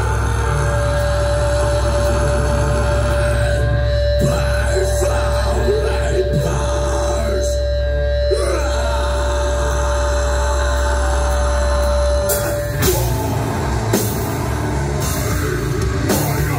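Sludge metal band playing live: a heavy, sustained low drone with a steady high tone held over it, then about three-quarters of the way through the drums and cymbals crash in with the full band.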